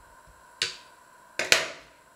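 Plum stones dropped into a stainless steel colander, clicking sharply with a brief metallic ring: one click about half a second in, then a louder quick double a second later.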